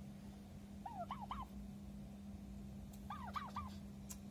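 Domestic turkey tom gobbling twice, about a second in and again about three seconds in. Each gobble is a short, quick run of three or four warbling notes.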